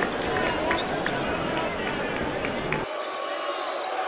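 Basketball game sound from an arena: steady crowd noise with short high sneaker squeaks and a ball bouncing on the hardwood court. The sound changes abruptly near the end as the footage cuts to another game's broadcast.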